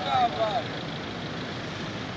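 Street noise from road traffic: an even, steady rush, with a few faint voices from the marching crowd in the first half second.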